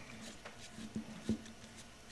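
Faint clicks and scrapes of a hex key turning a quarter-20 screw tight into a camera handle, the loudest click a little over a second in.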